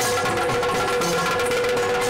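Yakshagana accompaniment: rapid drumming over a steady held drone tone.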